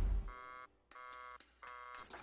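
A brief rush of noise dies away at the very start, then an electronic buzzer-like tone sounds three times, each about half a second long, with short silent gaps between.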